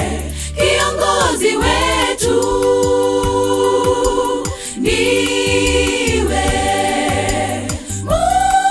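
Girls' choir singing a Swahili gospel song in long held chords over a steady low accompaniment with a regular beat.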